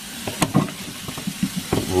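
Very hot water from a pull-down kitchen faucet sprayer running and splashing onto browned ground beef in a plastic strainer, rinsing the fat off, with a couple of small clicks about half a second in.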